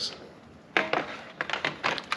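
E-bike battery pack being slid back into its mount in the frame, a series of sharp knocks and clicks starting less than a second in.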